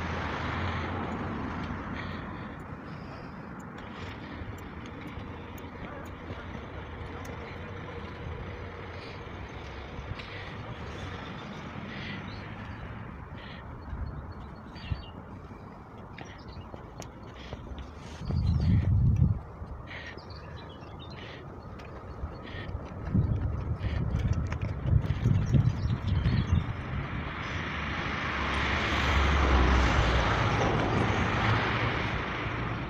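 Construction-site din heard from a distance, with scattered metal clanks and knocks in the middle. Wind buffets the microphone in gusts, briefly about two-thirds of the way through and again through the last few seconds.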